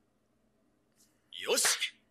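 A quiet stretch, then about a second and a half in one short, sharp shout of 'Bien!' from a character in the anime's dubbed soundtrack.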